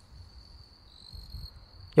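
An insect singing in the dark forest: one continuous, steady, high-pitched trill.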